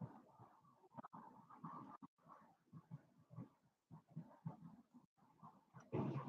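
Near silence: faint, indistinct room sounds, broken by brief complete dropouts.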